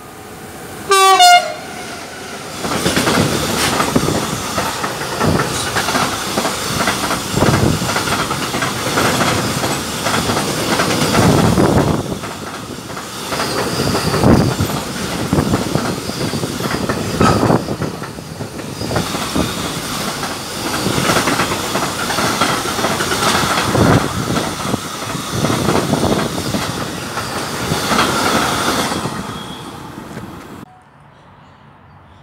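A short horn blast from an approaching electric locomotive about a second in, then a long container freight train passing close by, with repeated knocks of wheels over the rail joints, until the last wagon has gone near the end.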